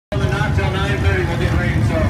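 Stock car engines running on the dirt track as a steady low rumble, with a man's voice talking indistinctly over them.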